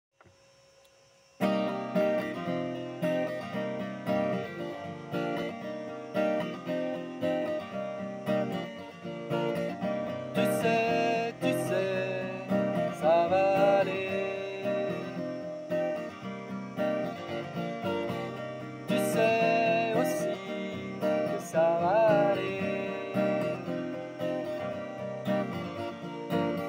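Acoustic guitar played in a steady rhythm, starting suddenly about a second and a half in after a near-silent moment.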